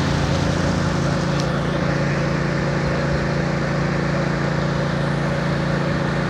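An engine running steadily at a constant speed, a continuous hum with no change in pitch.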